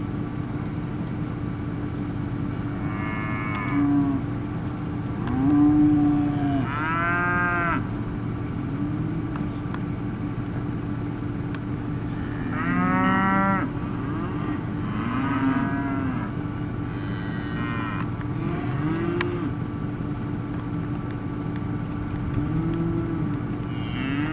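Angus-cross beef cattle mooing and bawling in a herd, about half a dozen separate calls spread through, some overlapping one another. A steady low hum runs underneath.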